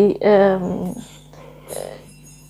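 A woman's voice drawing out a hesitant, wavering sound mid-sentence in the first half-second, then low room tone.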